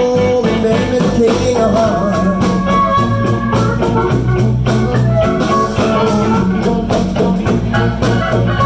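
Live electric blues band playing: electric guitars, bass and a steady drumbeat, with a harmonica played cupped into a vocal microphone.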